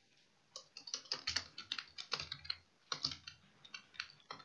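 Typing on a computer keyboard: an irregular run of quick key clicks starting about half a second in.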